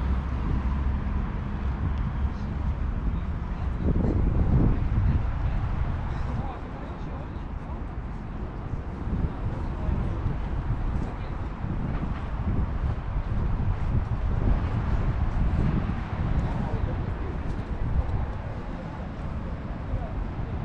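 Outdoor street ambience: wind rumbling on the microphone over distant traffic, with indistinct voices and a brief voice about four seconds in.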